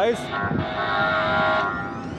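Light-rail trolley horn sounding one steady note for about a second and a half, starting about half a second in.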